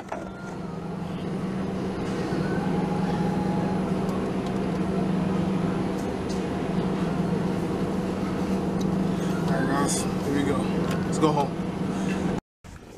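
Steady low hum of supermarket ambience, refrigerated produce cases and ventilation, with indistinct voices of other shoppers that come up briefly near the end.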